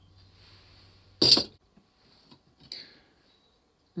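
A faint low hum, then about a second in a single short, loud burst of noise, a thump or a burst of breath, with the hum stopping at the same moment. Two faint clicks follow, then near silence.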